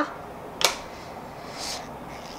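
A hand picking up a paintbrush from the table: a single light click about half a second in, then a faint rustle, over quiet room tone.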